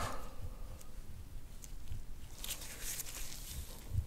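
Metal massage scraper stroked over oiled skin on a back: soft scraping, with a short hiss about two and a half seconds in, over faint low thumps.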